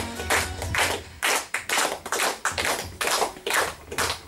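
Music ends about a second in, followed by audience applause heard as separate handclaps, several a second.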